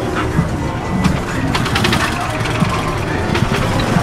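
Busy street ambience: several people talking at once and music playing, over a steady rumble of traffic.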